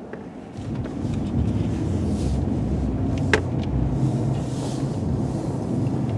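Low engine and road rumble heard inside a vehicle cabin while driving, rising in level about half a second in and then holding steady. A single sharp click sounds just past the middle.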